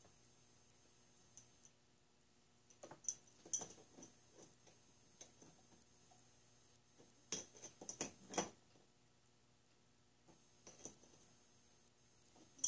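Faint, scattered small metal clicks and taps of parts being fitted by hand on a model steam engine, with a cluster about three seconds in and another around seven to eight seconds in, otherwise near silence.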